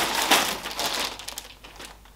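Clear plastic packaging bag crinkling as it is handled, loudest in the first second and fading away over the second half.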